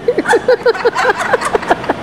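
Women laughing: a fast run of short "ha" pulses, about seven a second, that breaks off near the end.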